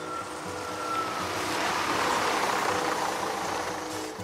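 A road vehicle passing, its noise swelling to a peak mid-way and fading, over background music with held notes.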